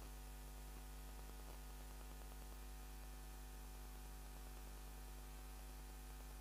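Faint, steady electrical mains hum: a low buzz with many evenly spaced overtones that does not change.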